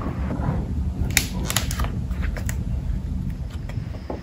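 A hardback picture book being handled and opened: a few sharp clicks and paper scrapes between about one and two and a half seconds in, over a steady low rumble.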